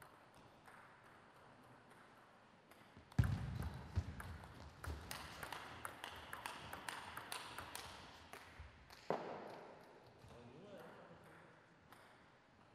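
Table tennis ball rally: a quick series of sharp clicks as the celluloid ball is struck by the bats and bounces on the table, over voices and background noise in the hall. A heavy thump about three seconds in is the loudest sound, and another sudden knock comes about nine seconds in.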